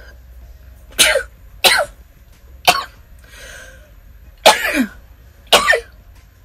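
A woman coughing, five harsh coughs spaced a second or so apart. It is a coughing fit set off by a whiff of strong perfume.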